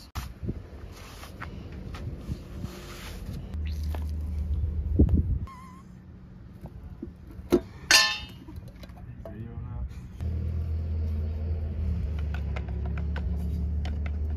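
Aerosol brake cleaner sprayed in a hiss of about two seconds. Several seconds later come two sharp metal clanks as a gallon paint can's lid is pried open, and after that a steady low rumble.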